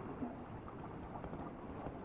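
Steady low rushing noise of wind buffeting the microphone outdoors, with a few faint small ticks.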